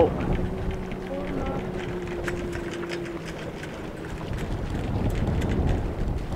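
Wind buffeting the microphone and water rushing past the hull of a small sailing boat moving fast under sail, the rumble swelling near the end. A faint steady hum runs through the first half, with a few light ticks.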